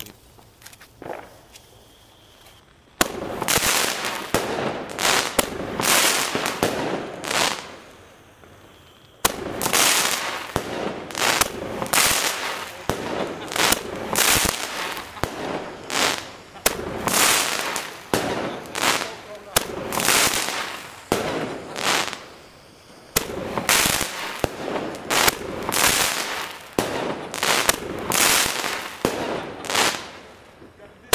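Fireworks going off in rapid succession: a dense run of bangs and crackles that starts about three seconds in, with two brief lulls.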